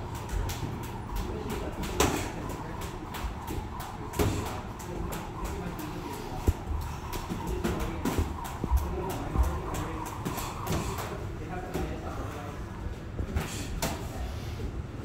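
Boxing sparring: irregular thuds of gloved punches landing on the opponent's gloves and arms, mixed with feet shuffling on the ring canvas, over steady gym background noise.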